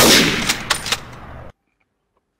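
Dubbed-in gunfire sound effect: a loud shot at the start, then a few sharper cracks over the next second, the sound fading and then cutting off abruptly about a second and a half in.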